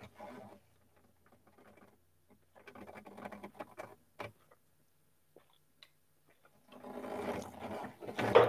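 Faint sounds of a man drinking from a pint glass close to the microphone: soft swallows and glass-handling noises with a sharp click about four seconds in, then a quiet rustle near the end.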